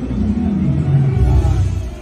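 A low rumble that slides down in pitch about halfway through.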